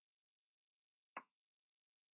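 Near silence, broken once by a single short click a little after a second in.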